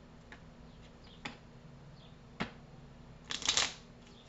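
Tarot cards being handled on a table: three light clicks as cards are set down or flicked, then a brief rustle of cards near the end.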